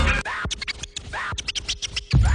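Turntable scratching in a hip-hop track: a run of quick back-and-forth scratch strokes over a break where the bass and drums drop out.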